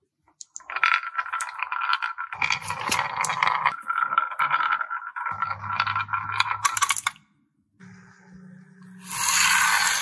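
Small balls rolling down a wooden wavy marble track, a steady rolling rattle with many clicks as they knock through the curves, for about six seconds. After a brief pause a faint low hum comes in, then a louder hissing noise near the end.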